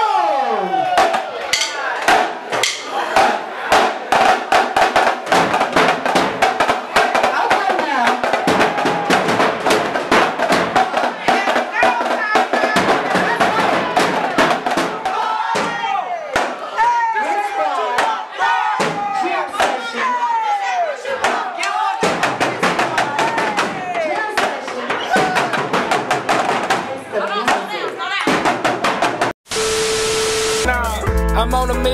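Marching drums played with sticks in a fast, continuous run of strikes, with voices and crowd noise over them. The sound cuts off sharply just before the end.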